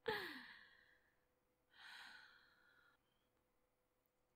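A woman's voiced sigh that falls in pitch and fades over about a second, followed by a softer breath about two seconds in.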